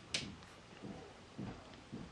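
Faint handling noise of fingers on a smartphone's touchscreen and the table: a sharp click just after the start, then a few soft low thumps.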